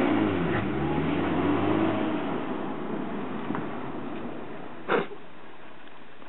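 A small Renault Twingo hatchback's engine as the car pulls away and drives off. The engine note dips and rises and fades into the distance over the first couple of seconds. A short, sharp noise comes about five seconds in.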